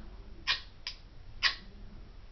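Ferro rod on a magnesium fire starter struck three times: short, sharp scrapes, the middle one weaker than the other two.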